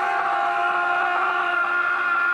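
A man's long cry held on one steady pitch from the trailer's soundtrack.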